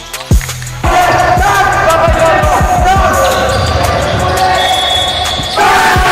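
Backing music with a steady deep bass, over basketball game sound: a ball bouncing repeatedly on the hardwood court and players' voices, loudest from about a second in.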